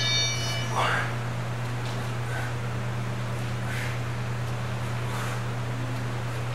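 A man's short breathy exhales, about one every second and a half, as he does repeated V-up sit-ups, with a brief voiced grunt about a second in. A steady low hum runs underneath and is the loudest constant sound.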